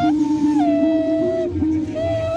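A small wind instrument cupped in both hands and blown at the mouth, playing a simple wavering tune. Two held tones sound at once: a lower steady one and a higher melody that steps up and then back down. The tune breaks off briefly near the end and then resumes.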